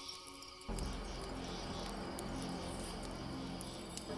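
Soft ambient music mixed with a steady chirring of crickets and sparse crackling clicks from a wood fire. About a second in, the music swells into a deeper, fuller chord.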